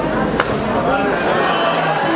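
A cloth-wrapped glass shattering under a stamping shoe, a single sharp crack about half a second in: the breaking of the glass that ends a Jewish wedding ceremony. Voices talk around it.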